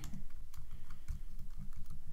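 Computer keyboard keys being pressed in a quick, irregular run of clicks as text is typed.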